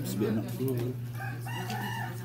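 A rooster crowing: one drawn-out call that starts a little past the middle.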